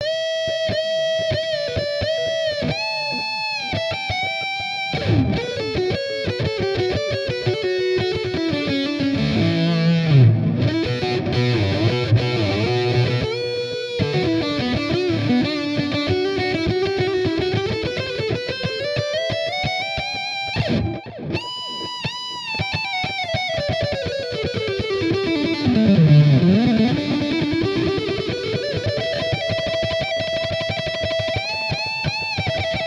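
Electric guitar playing a fast lead solo. It opens with the same note bent up several times, then runs through rapid pull-off licks that fall and climb in pitch, and ends on a held note.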